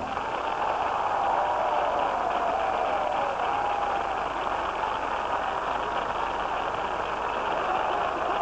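Studio audience applauding, a steady dense clapping right after the music stops.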